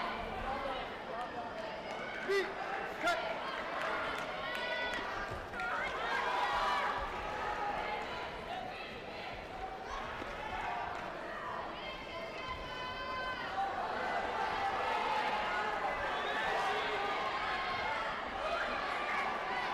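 Sports-hall din during a taekwondo bout: overlapping shouts and calls from several voices. Two sharp knocks stand out about two and three seconds in.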